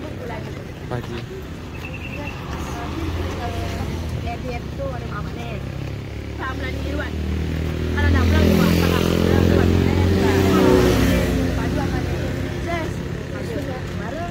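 A motor vehicle passing on the road: a low engine hum that builds, is loudest from about eight to eleven seconds in, then fades away, with children's voices chattering over it.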